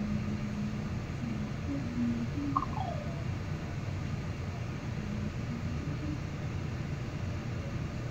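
Steady low hum of background noise, with a few faint short tones and one brief falling squeak about two and a half seconds in.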